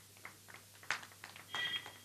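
Faint scattered clicks and taps, one sharper click about a second in, then a brief high beep-like tone near the end.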